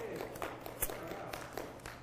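A few light clicks and taps from a Bible being handled at a lectern, spread through two seconds, over a low steady hum.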